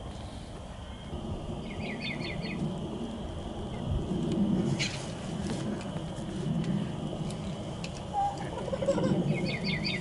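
Outdoor ambience: a small bird trilling briefly, once about two seconds in and again near the end, over a low steady rumble, with a single sharp click about five seconds in.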